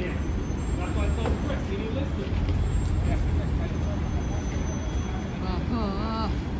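Steady low rumble of city street traffic, with scattered voices from people on the sidewalk and one voice calling out near the end.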